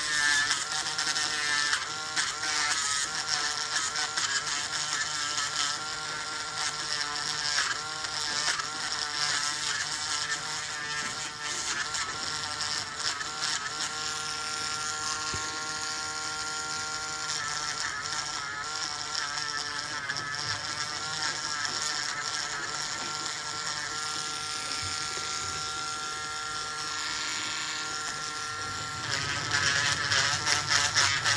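Podiatry rotary nail drill running as its burr grinds down a thickened toenail. The motor's whine wavers in pitch as the burr presses into the nail, then holds steady for stretches.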